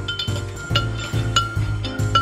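A metal spoon stirring coffee in a ceramic mug, clinking against the sides several times with short ringing tones, over background music with a steady bass beat.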